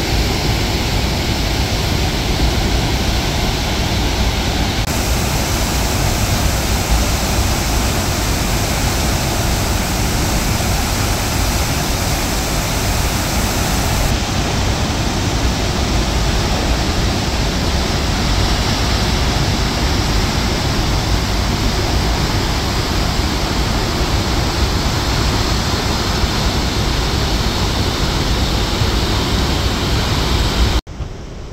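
Muddy floodwater released through an open dam spillway gate, rushing and churning below it in a loud, steady wash of water noise. The sound shifts slightly in brightness about five seconds in and again about fourteen seconds in.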